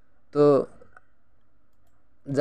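One short spoken word, then a single faint computer mouse click about a second in, over low room tone.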